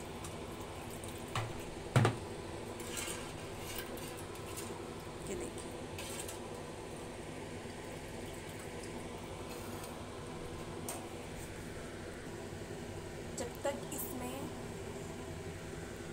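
A steel ladle knocks sharply once against a steel cooking pan about two seconds in, followed by a few fainter clinks and scrapes as thin, watery curry gravy is stirred, over a steady low background hiss.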